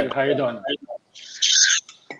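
Wordless laughter over a video call: a bending, pitched voice for the first half-second or so, then a short breathy hiss a little past the middle.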